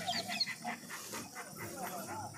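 Faint animal calls: a quick run of short, high-pitched yips in the first half second, with faint voices in the background.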